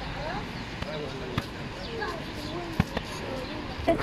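Faint voices of people talking in the street, with a couple of sharp knocks, one about a second and a half in and a louder one near three seconds.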